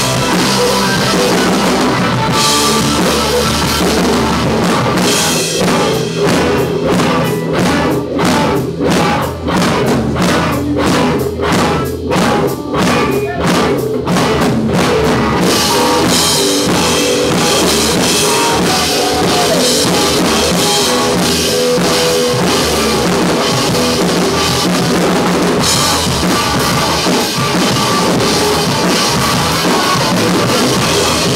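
A live rock band with electric guitars and a drum kit plays loudly. Through the middle the band plays short accented hits about twice a second, with brief gaps between them, then the full band comes back in and drives on.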